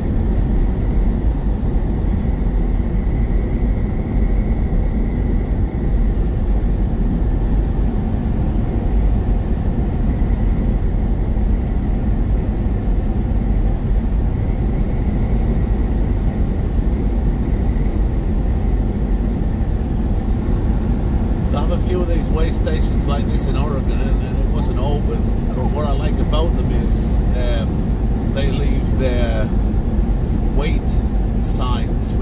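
Steady low rumble of a semi-truck's engine and tyres heard from inside the cab while driving. About three quarters of the way through, a voice-like sound with quick clicks comes in over the rumble.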